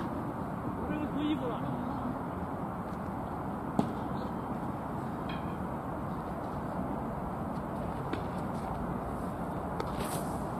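Steady outdoor background noise with faint distant voices, and one sharp knock about four seconds in.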